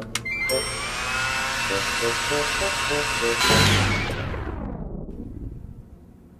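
A hand-held hair dryer is switched on: its motor whine rises over about a second and then runs steadily with a rushing hiss. About three and a half seconds in comes a loud low thud, and the whine winds down and dies away over the next second and a half. Light rhythmic music plays underneath.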